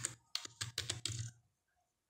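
Computer keyboard being typed on: a quick run of keystrokes that stops about a second and a half in.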